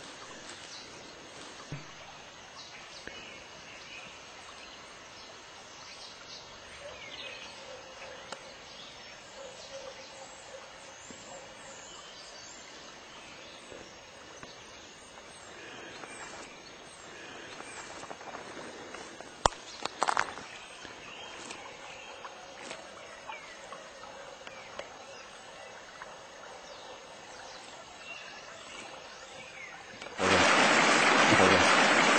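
Faint outdoor ambience with a few soft bird chirps. A sharp click and a brief loud scuffle come about two-thirds of the way through.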